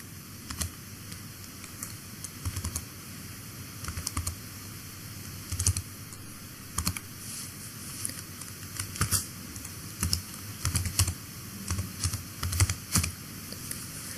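Typing on a computer keyboard: irregular keystrokes in short clusters as an email address is entered into a form, over a faint steady hiss.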